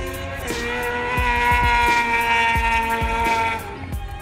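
Sportbike engine at high revs as the bike rides past on the track, its pitch holding nearly steady and fading away near the end, heard over background music with a beat.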